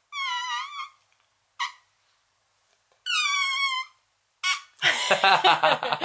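Two high, wavering squeaks of just under a second each, made with a person's voice or mouth, with a short chirp between them. Loud laughter breaks in about five seconds in.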